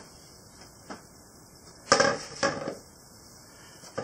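A plastic mixing bowl is handled and set down on a granite worktop: a light tick about a second in, then a sudden clatter near the middle with a second knock just after, over quiet room tone.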